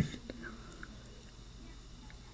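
A quiet pause between spoken lines: faint steady microphone hiss with a low hum, a few tiny faint noises early on, and the very end of a voice trailing off at the start.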